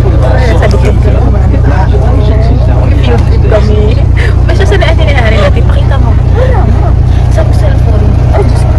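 Bus engine and road rumble heard from inside the passenger cabin: a loud, steady low drone, with voices chattering over it.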